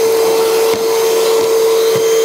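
Milwaukee M18 FUEL 2-gallon cordless wet/dry vacuum (0880-20) running steadily: a constant hum with rushing air as its hose nozzle picks up sawdust.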